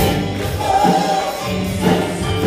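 A church worship team of several singers sings a gospel song in harmony through the PA, with keyboard and bass guitar accompaniment. One voice holds a long note in the middle.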